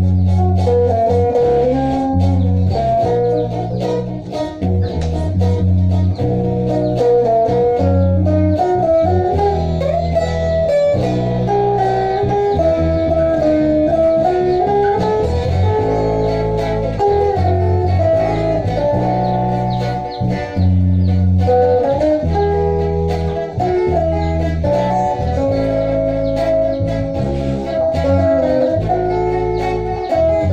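Instrumental trio of a fingerstyle lead electric guitar playing the melody, a strummed rhythm electric guitar and a bass guitar.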